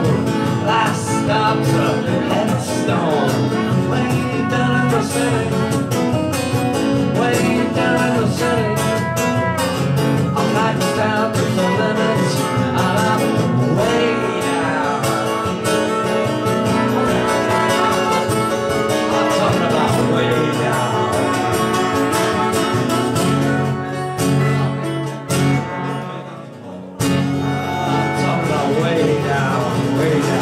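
A solo acoustic guitar strummed steadily under a man's singing voice, played live. Near the end the playing thins out and breaks off for a moment, then the guitar comes back in.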